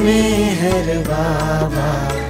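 Devotional dhun: a sung chant with a wavering, melismatic vocal line over a steady low drone.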